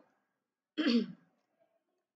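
A woman clearing her throat once, briefly, about three-quarters of a second in; the rest is silence.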